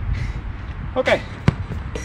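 A man says "ok", and about a second and a half in there is a single short, sharp knock, over a steady low rumble.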